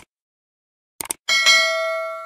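Subscribe-button sound effect: a short click at the start, another click about a second in, then a bright bell ding, the loudest sound, that rings on and slowly fades.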